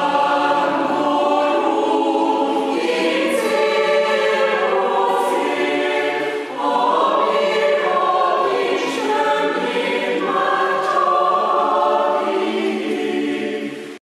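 Mixed choir of men's and women's voices singing a Christmas song in several parts, with a short break between phrases about six and a half seconds in.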